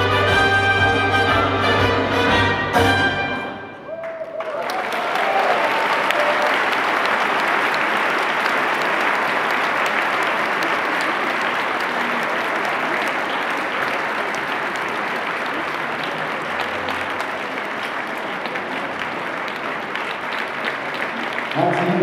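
Orchestral paso doble music with brass ends about three seconds in. A large audience's applause follows for the rest of the time, slowly fading.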